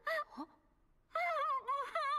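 A high-pitched voice making wordless vocal sounds from the anime soundtrack: two short calls in the first half second, then a longer call from about a second in that wavers up and down in pitch.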